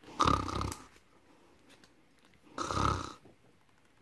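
A person reading aloud imitates snoring: two short snores about two and a half seconds apart.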